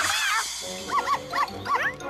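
Cartoon cat character vocalising, with a wavering cry at first and then four short rising-and-falling chirps, over background music.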